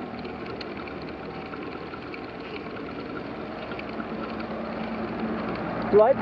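Steady, even noise of a bicycle riding up a paved road, picked up by a handlebar-mounted camera, growing slightly louder toward the end.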